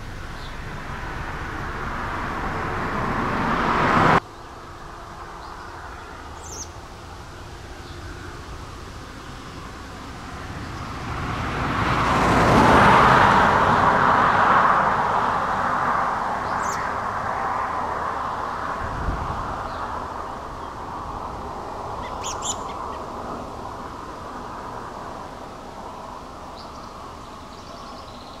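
Cars passing on a road: one approaching that cuts off suddenly about four seconds in, then another that swells and fades over several seconds. A few short bird chirps come through over the road noise.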